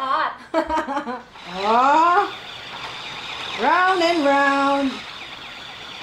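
Two siren-like wails. A short rising sweep comes about a second and a half in. A second rise near the middle settles into a held steady note for about a second.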